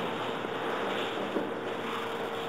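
Steady background noise of a room with a faint steady hum running through it, and one light knock a little past halfway.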